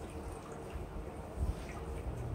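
A wet foam sponge pressed and squeezed in a glass bowl, with water being wrung out of it into the bowl. There is a soft knock about one and a half seconds in.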